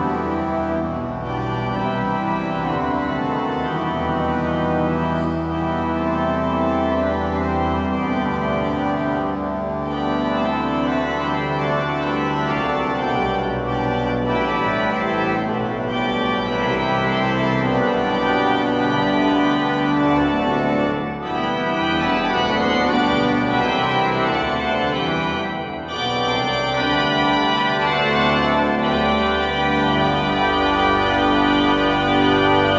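Church pipe organ played in a continuous, many-voiced piece, chords changing throughout over a low bass note held for the first several seconds. The sound briefly thins twice, about two-thirds of the way in and again a few seconds later.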